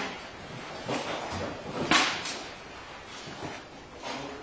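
Paintball markers firing: a few sharp, short pops, the loudest about two seconds in.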